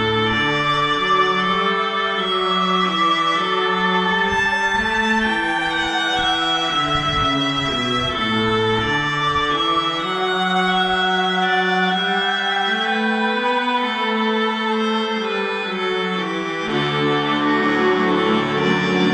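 Music with bowed strings, a violin melody over sustained lower string notes, played back through a homemade three-way bass horn loudspeaker. The deepest bass drops out about a second in and comes back strongly near the end.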